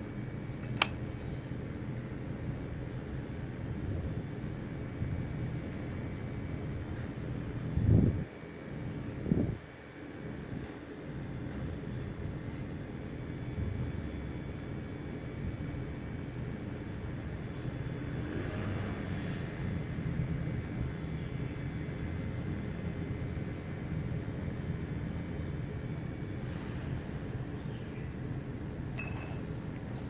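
Steady low background rumble, with a sharp click about a second in and two dull thumps a little over a second apart near the middle.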